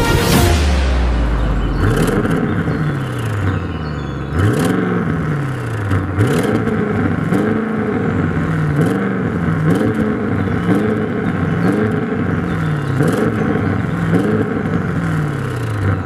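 The 2021 Audi RS7 Sportback's twin-turbo V8 being revved repeatedly while the car stands still. Each rev climbs and falls back, about one every one and a half seconds.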